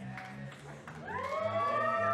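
Live band on stage: low notes repeat in an even pattern, and about a second in a set of tones slides upward and then holds steady, like a siren.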